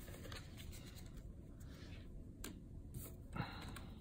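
Faint handling of a small stack of trading cards: a few soft clicks and light rustles, with a brief tap about three and a half seconds in as the cards are set down on a wooden table.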